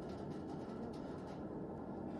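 Faint room tone of a conference room: a steady low hum and hiss with a few soft rustles.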